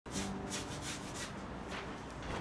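Paintbrush scrubbing paint across a canvas in a quick run of short strokes, about seven in under two seconds.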